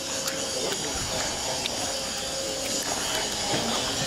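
Steady hiss of background noise, with a faint steady hum near the start.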